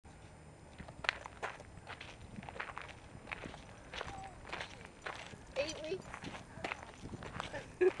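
Footsteps crunching on gravel, in irregular short steps, with a few brief voice sounds in the middle and a person laughing at the very end.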